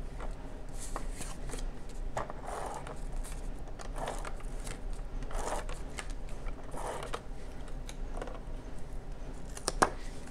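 Handheld adhesive tape gun being run along the edges of a card panel, laying down double-sided tape in about four short strokes, with a sharp click near the end.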